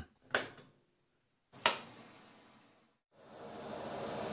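Washing-machine sound effect: two sharp clicks a little over a second apart as the machine is switched on, then about three seconds in a steady machine hum starts and grows louder.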